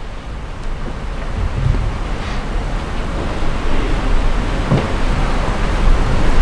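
A loud, steady rushing noise, like wind on a microphone, growing louder.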